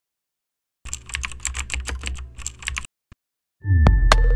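Computer keyboard typing sound effect: a quick run of key clicks for about two seconds, then a single click. Near the end a louder music sting with deep bass starts.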